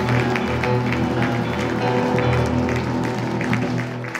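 Live ensemble music, with grand piano and guitar playing over a sustained bass line.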